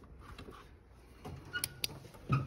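Quiet handling noise with two short, sharp clicks about a second and a half in, a quarter of a second apart.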